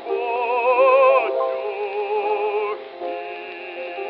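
Operatic bass voice singing a slow Russian song with a wide vibrato, holding long notes. It comes from an early recording: thin and boxy, with no deep bass and no high treble.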